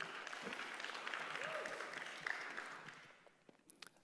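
Audience applauding briefly, fading out about three seconds in.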